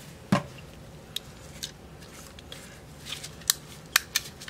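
A plastic paint bottle set down on a work table with a single knock shortly after the start, followed by a few scattered light clicks and taps of handling.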